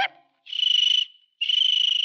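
Two short, shrill trills, each about half a second long, a high fluttering tone, with a short gap between them: a sound effect laid into a pause in a 1950s Hindi film song.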